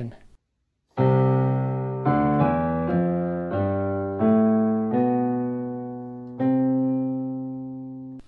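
Digital piano playing a slow, heartfelt sequence of sustained chords, starting about a second in after a brief silence. There are about eight strikes, each left to ring and fade, and the last chord is held longest.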